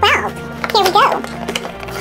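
Soft background music with steady sustained tones. Over it, in the first second, come two short high-pitched wavering cries, the first sliding down in pitch.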